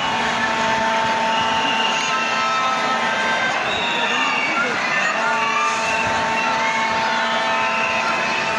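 Large stadium crowd: many voices shouting and chattering at once, with a steady droning tone held over it that breaks off briefly around the middle.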